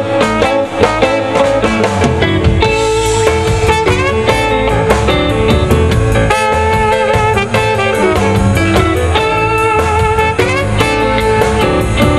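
Live electric blues band playing an instrumental passage, the electric guitar prominent over bass and drums, with some notes sliding in pitch.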